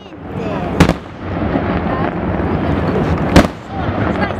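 Fireworks display: two sharp, loud shell bursts about two and a half seconds apart, over a steady background of voices.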